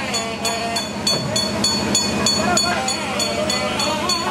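Metal hand bell rung rapidly and evenly, about three strokes a second, for a lamp offering (arati) before the deity. A wavering melody of voices or a reed pipe and a low steady drone run beneath it.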